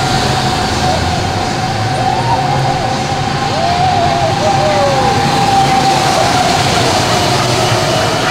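Swinging-arm amusement park thrill ride running, with a steady whine held throughout. A few seconds in, people cry out "oh, oh" as it swings.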